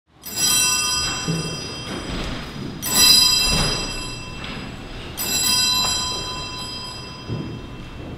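A bell struck three times, about two and a half seconds apart. Each stroke rings out high and bright and fades away before the next.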